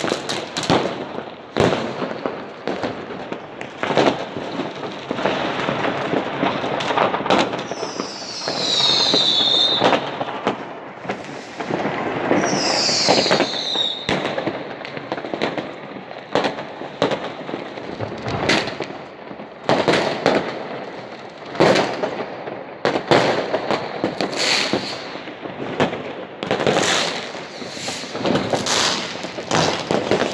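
Fireworks and firecrackers going off all around: a constant crackle with many sharp bangs in quick succession. Twice, partway through, a whistle falls in pitch.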